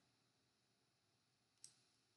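Near silence, with a single faint computer mouse click about one and a half seconds in.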